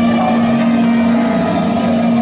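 Large mixed ensemble of winds, brass, strings, electric guitars, keyboards and drums improvising a dense, buzzing mass of sound, with one steady held low note sounding through it.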